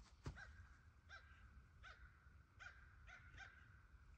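Faint dog barking, about six short barks spaced under a second apart, against near silence, with a soft knock just before the first bark.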